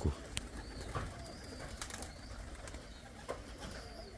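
Faint sounds of a flock of domestic pigeons at their loft: soft bird calls with a few short high chirps and scattered light clicks over a low steady background.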